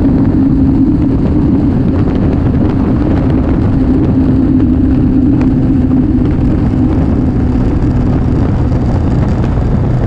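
BMW K1200R Sport's inline-four engine running at a steady cruise, a constant drone that fades a little near the end, under a dense low rumble of wind and road noise.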